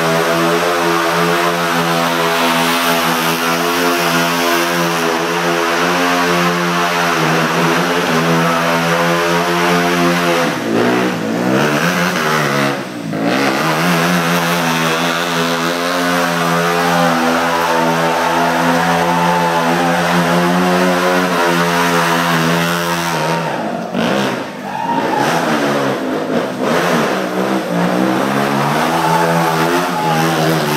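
KTM Duke stunt motorcycle's engine held at steady revs for long stretches, with the revs dropping and climbing back up a few times in between.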